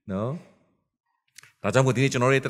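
A man's voice speaking into a microphone: a short falling utterance at the start, a pause, then speech again from a little past the middle.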